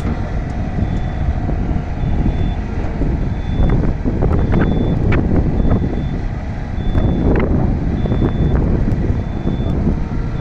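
Wind buffeting the microphone as a constant rumble, with a short high electronic beep repeating about once a second, like a vehicle's reversing or warning beeper. A few brief knocks sound around the middle.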